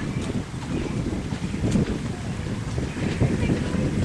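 Wind buffeting the camera microphone, an uneven low rumble, with faint voices.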